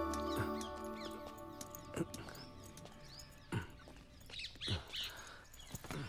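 Soft background music fading out over the first second or so, leaving quiet outdoor ambience with a few bird chirps and several soft taps spaced a second or more apart.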